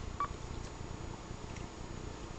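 One short electronic beep from a Kenwood TS-440 transceiver about a fraction of a second in, the radio's confirmation of a front-panel key press as the frequency is stepped up by one megahertz. After it there is only faint steady background noise.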